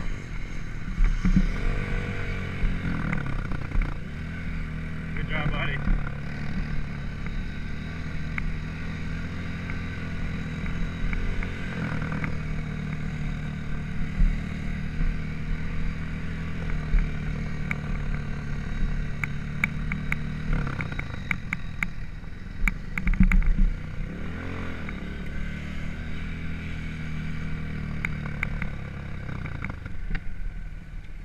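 Dirt bike engine running at low speed close to the microphone, the throttle opening and closing several times so the pitch rises and falls. Sharp ticks and clatter come in bursts about two-thirds of the way through.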